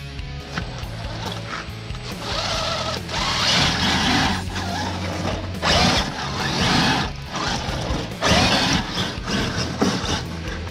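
Redcat Gen8 electric RC crawler driving through snow and slush: its motor and gears whir and its tyres churn the slush in several loud bursts from about two seconds in. Guitar music plays steadily underneath.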